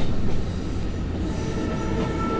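Passenger train running, heard from inside a compartment as a steady low rumble, with a faint steady high tone coming in about halfway through.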